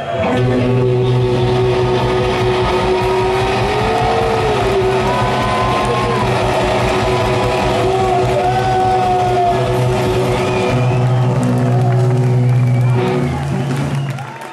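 Garage-punk band playing loud and live: distorted electric guitar, bass, combo organ and drums over a fast, driving beat, with a held low bass note and wavering organ or vocal lines. The music dips briefly just before the end.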